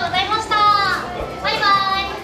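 A woman's high-pitched voice in two or three lively, sing-song phrases, the pitch sliding up and down.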